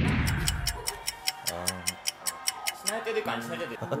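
Edited-in clock-ticking sound effect, a fast, even run of sharp ticks, opening with a whoosh as the shot changes. Faint background music plays underneath.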